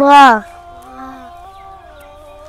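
A child loudly calls out the Arabic letter Ra as one drawn-out syllable that rises and then falls in pitch, lasting about half a second. After it a quiet background nasheed holds steady sung notes.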